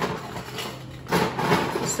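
Bar equipment being handled behind the counter: rustling, scraping noise in short bursts, the loudest about a second in.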